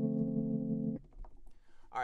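Rhodes-style electric piano keys line playing back: a held chord that stops about a second in.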